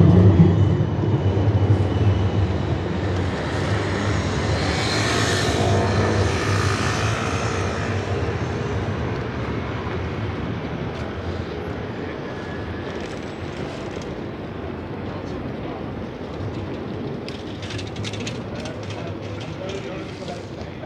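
City tram passing on street rails: a low electric motor hum with wheel and rail noise, loud at first and fading over about eight seconds as the tram pulls away, leaving steady street traffic noise.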